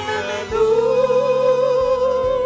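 A solo voice singing a slow worship song, taking a new breath and then holding one long note with vibrato from about half a second in.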